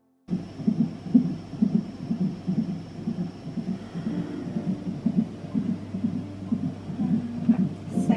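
Fetal heartbeat played through a Huntleigh Sonicaid CTG monitor's Doppler speaker: a rhythmic pulsing beat about twice a second, in step with the 125 beats per minute shown on the monitor, over a faint steady high whine. It starts suddenly just after the beginning.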